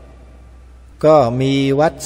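Speech only: a man talking in Thai through a microphone, with the first word drawn out at a steady pitch. It comes in after about a second's pause in which only a faint low hum is heard.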